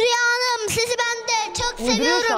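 A young boy singing his rap into a stage microphone in a sing-song chant, in short phrases held on nearly one pitch.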